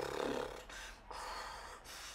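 A child making mouth sound effects: a voiced cry fading over the first half second, then two breathy, hissing blows.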